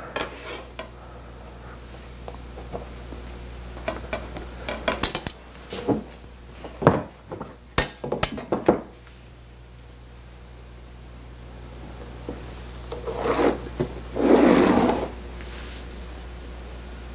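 Metal rulers clicking and knocking against the cutting table as they are picked up and laid down, a cluster of clacks about four to nine seconds in. Near the end a pencil scratches along a steel straightedge for about two seconds, ruling a long line on the vinyl.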